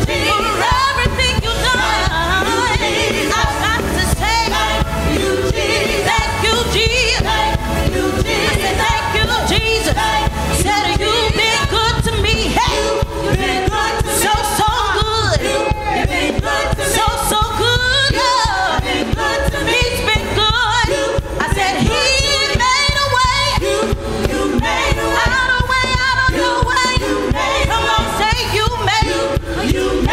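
Live gospel praise song: a group of male and female voices singing together into microphones over instrumental accompaniment with a steady beat.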